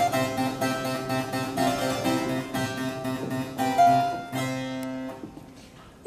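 Harpsichord music: a run of quick plucked notes with sustained chords, ending on a held note that dies away near the end.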